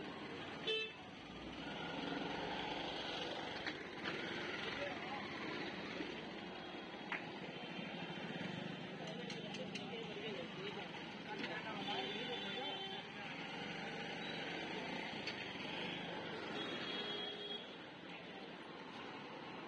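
Busy street ambience: steady motor traffic and the chatter of passers-by, with a short, loud vehicle horn toot about a second in and fainter horn notes later on.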